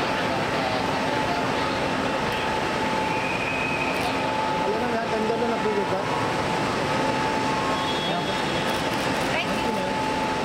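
Indistinct chatter of several people over a steady hum and background noise of a busy terminal entrance. Two brief faint high tones sound, one about three seconds in and one near the end.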